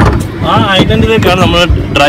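A man talking, over the steady low hum of a motorboat's engine.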